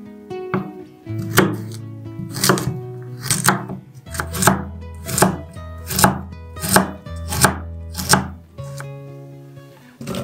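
Chef's knife chopping carrots on a wooden cutting board: about ten sharp chops, roughly one every two-thirds of a second, stopping about eight seconds in. Soft guitar music plays underneath.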